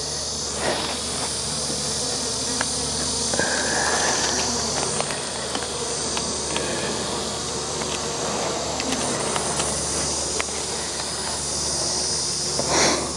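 Italian honey bees buzzing steadily over an open hive, a continuous low hum, with a few faint clicks as the frames are handled.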